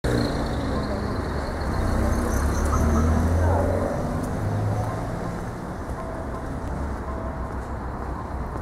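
Outdoor street sound: a motor vehicle's engine running, its low rumble swelling a couple of seconds in and easing off after the middle, with people talking indistinctly in the background.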